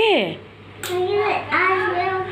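A young child's voice: a falling cry at the start, a short hissing breath about a second in, then drawn-out, held vocal sounds.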